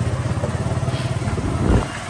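Small motorcycle engine running steadily with an even, rapid low putter, and a louder low thump near the end.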